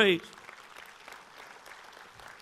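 Congregation clapping: a faint, even patter of many hands, which follows the end of a spoken word just after the start.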